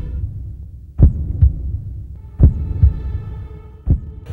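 Heartbeat sound effect: deep thumps in lub-dub pairs, a pair about every second and a half, over a low steady hum.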